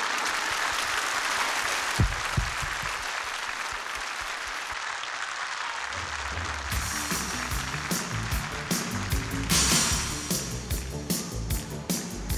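Studio audience applauding. About halfway through, a band's music comes in with a steady bass beat and drum and cymbal hits.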